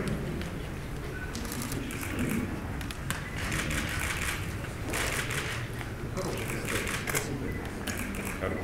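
Indistinct murmur of voices in a large hall, with bursts of rapid camera shutter clicks at several moments.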